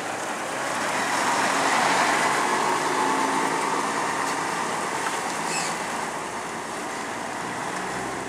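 Mitsubishi Fuso garbage truck with a MacDonald Johnston MNL front-loader body driving slowly past, its diesel engine loudest about two seconds in, then fading as the truck moves away.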